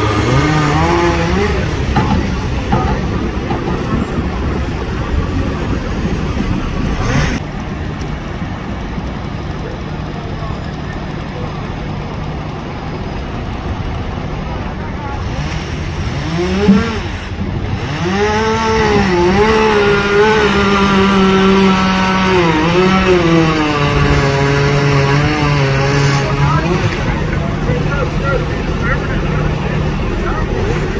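Street traffic: motor vehicle engines passing close by, their pitch rising and falling as they speed up and slow down, with one sharp knock about halfway through.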